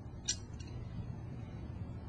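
Quiet room tone with a steady low hum, and one brief soft hiss about a third of a second in.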